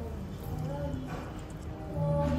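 Noodles being slurped from a bowl, a short sucking rush about a second in, over background music.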